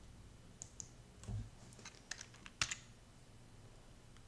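Faint computer keyboard key presses and clicks, a scattered run over about two seconds, the loudest about two and a half seconds in, with a dull low thump just after a second in.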